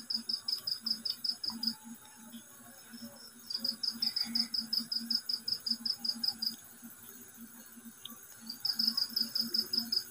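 Cricket chirping in steady high-pitched trills of about seven or eight pulses a second, coming in three bouts of roughly three seconds with short gaps between.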